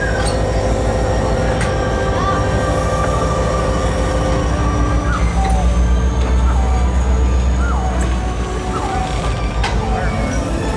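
Passenger coaches rolling slowly past on the rails, a steady low rumble that grows louder through the middle and eases near the end. A thin high steady whine runs over it, rising slightly in pitch midway.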